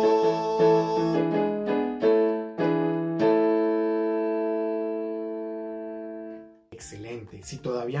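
Closing instrumental chords of a Costa Rican song's accompaniment: several struck chords, then a final chord held and fading for about three seconds before it stops. A man starts speaking near the end.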